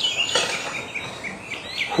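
Small songbird chirping a quick series of short, high notes.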